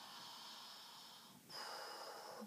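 A woman's faint, slow breathing, two breaths in a row, the second starting about one and a half seconds in. This is relaxed belly breathing, letting the abdomen swell and fall.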